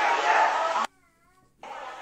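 Voices and crowd chatter in a busy hall that cut off abruptly just under a second in. After a short near-silent gap, quieter hall noise and voices come back.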